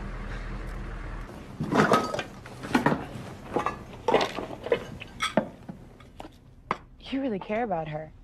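Clinking and clattering of small hard objects being handled, like dishes or metal utensils, in a string of short knocks. Before them, a low hum stops about a second in.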